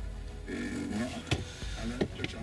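Car radio playing music through the car's speakers at a lowered volume, turned down automatically by the Android head unit while the backup camera is on in reverse. There is a single sharp click about two-thirds of the way through.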